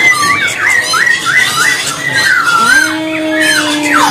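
Caged poksay (laughingthrush) calling loudly: a run of short, quickly repeated chirping notes, about three a second. Near the end a long, steady, lower note is held.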